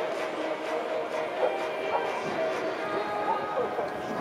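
Indistinct chatter of spectators with no clear words, over faint music with long held notes.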